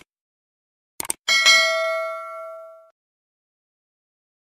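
Subscribe-button animation sound effect: two quick clicks, then a bell ding that rings and fades over about a second and a half.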